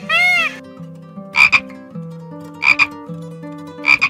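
A repeated high call ends about half a second in. Then a tree frog croaks three times, a little over a second apart, each croak a quick double pulse.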